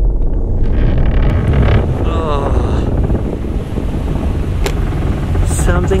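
Ford SUV tyres rolling over the timber planks of an old wooden bridge deck, a loud steady low rumble with a few sharp ticks near the end.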